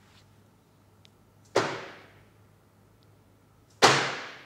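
Two hammer blows on a steel bearing-driving tool, knocking a ball bearing home onto the outer back half joint of a Heiniger shearing handpiece. Each strike rings out briefly, the second louder and near the end.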